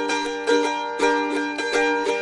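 Acoustic plucked string instrument playing chords in a short instrumental gap between sung lines, with a few fresh chords struck about half a second apart.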